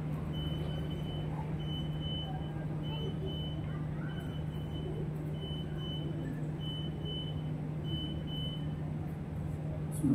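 Steady low electrical hum, with a faint high beep repeating about every second and a quarter.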